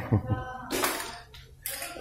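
Brief splashes of water in a kitchen sink, twice, under faint background voices.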